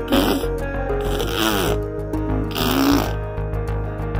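Background music, with a baby making three short breathy, rasping vocal sounds, each falling in pitch, about a second and a half apart.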